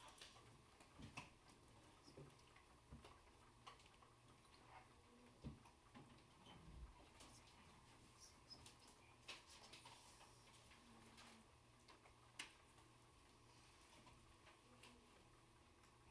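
Near silence: quiet room tone with a faint low hum and scattered faint clicks.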